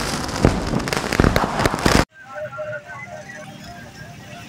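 Loud, dense crackling of rapid pops, like fireworks, that cuts off abruptly about two seconds in. Much quieter street sound follows, with short faint chirping tones.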